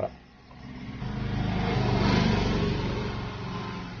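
A motor vehicle going past, its engine and road noise swelling for about two seconds and then slowly fading.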